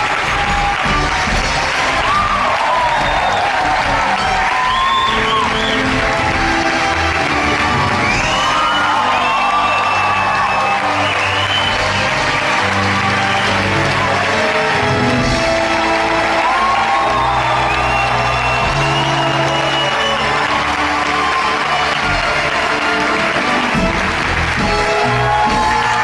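Theatre audience applauding and cheering with frequent whoops while an orchestra plays the curtain-call music.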